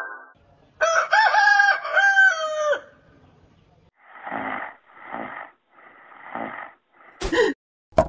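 A rooster crowing: one long crow about a second in. It is followed by three soft swishes and a sharp click near the end.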